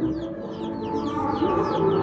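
Chickens clucking, with short high calls scattered through, over soft background music with long held notes.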